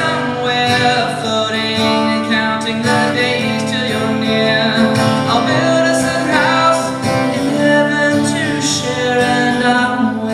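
A man singing a song while strumming an acoustic guitar, performing solo live.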